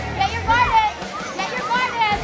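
Raised, high-pitched voices shouting in two short bursts over the general noise of a busy hall.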